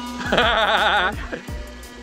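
A person laughing with a wavering, bleat-like pitch for about a second, over background music.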